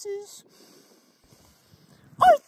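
A man's voice trails off at the end of a word with a short breathy exhale, then only faint background hiss.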